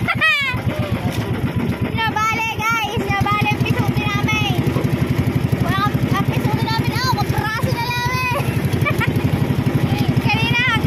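Outrigger boat's engine running steadily with a rapid, even pulse, while voices call out over it several times.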